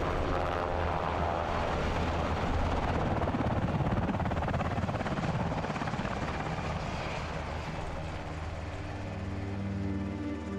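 Military helicopter flying, its rotor and engine noise growing to its loudest a few seconds in and then fading. Music begins near the end.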